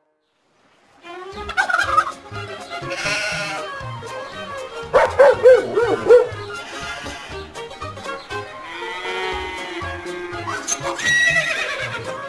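A string of farm-animal calls, a turkey gobbling and a goat bleating among them, one after another over background music with a steady beat. The sound starts about a second in after a brief silence.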